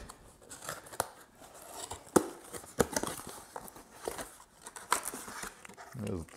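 A bicycle saddle being unpacked from its cardboard box: the box and paper packaging are handled, crinkling and rustling, with irregular sharp clicks and taps.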